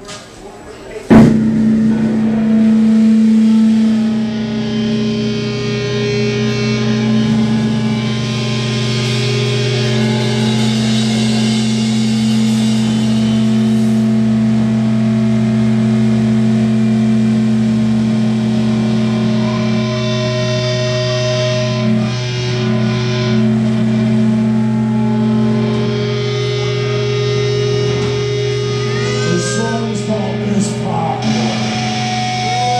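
Live rock band starting a song: a sudden loud hit about a second in, then electric guitars and bass hold one low droning chord, with cymbals ringing above.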